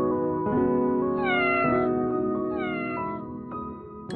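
Domestic cat meowing twice, about a second in and again near three seconds, each call falling in pitch, over background music with sustained chords.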